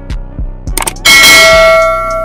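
Notification-bell 'ding' sound effect: a sharp click, then about a second in a loud bell strike whose ringing tones fade over about a second and a half. Background music with a beat plays underneath.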